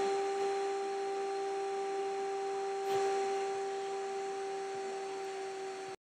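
A steady electrical hum: one unchanging pitched tone with a weaker tone an octave above it, and a faint click about three seconds in.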